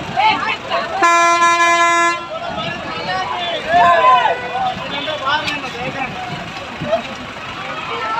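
A vehicle horn sounds one steady blast of about a second, starting about a second in, the loudest sound here, over the voices of a crowd on the street.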